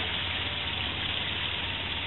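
Polaris side-by-side UTV engine running steadily at low speed with an even low hum.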